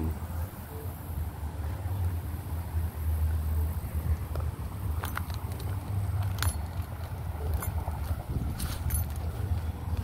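Wind buffeting the microphone, a low rumble that rises and falls, with a few scattered clicks from handling the camera.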